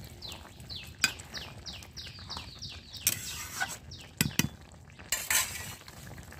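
A metal spatula stirring in an iron karahi, scraping and clinking against the pan, with the louder knocks near the middle and a scrape toward the end. Over it a bird calls a quick run of about nine short falling notes in the first three seconds.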